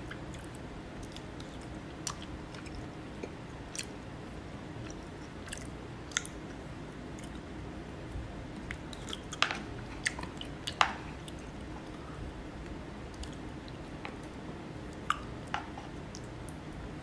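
A person eating: chewing, with scattered sharp clicks of wooden chopsticks against a plastic bowl and a cluster of louder clicks a little past the middle, over a steady low background hum.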